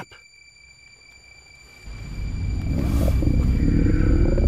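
Low steady rumble inside a car cabin. It sets in about two seconds in, after a quiet stretch.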